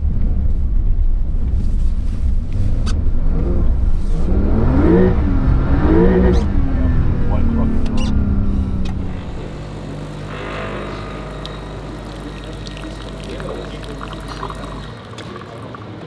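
Porsche 911 Dakar's twin-turbo flat-six and tyres heard from inside the cabin on the ice track, a loud low rumble with the pitch rising and falling several times. About nine seconds in it gives way to a quieter steady hum that cuts off shortly before the end.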